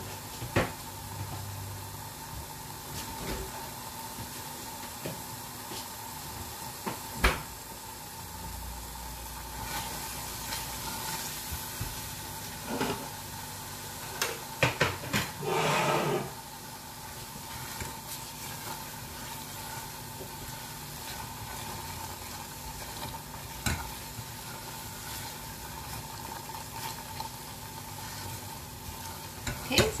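Thick spiced masala paste sizzling gently in oil in a stainless steel saucepan. There are a few sharp taps, and a short spell of scraping about halfway through as a silicone spatula stirs it. The oil has separated from the paste, the sign that the masala is nearly done.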